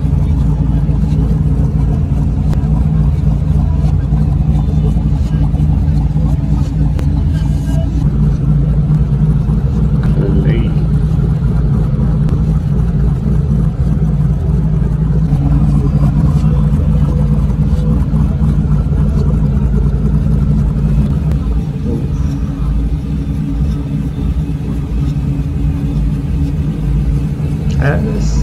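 Twin-turbocharged LS3 V8 in a first-generation Pontiac Firebird idling steadily, with a deep, even exhaust note; it eases off slightly for a few seconds past the middle.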